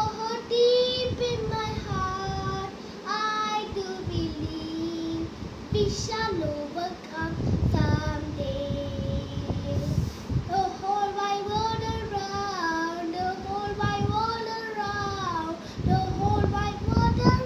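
A young boy singing a song in English, holding long notes that slide up and down, with a short break about six seconds in.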